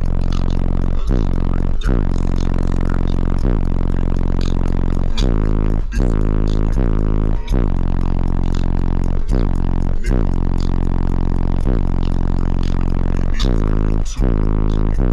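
Bass-heavy music played loud through four Resilient Sounds Gold 15-inch subwoofers. A deep, buzzy bass line steps and slides in pitch under sharp beat hits that come roughly every 0.8 seconds.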